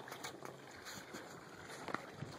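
Faint outdoor background noise with light wind on the microphone and a few small faint clicks.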